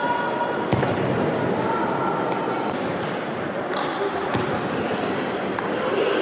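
Table tennis ball being served and rallied, a few sharp clicks of the celluloid ball off bats and table, over a steady babble of voices and other games in a large sports hall.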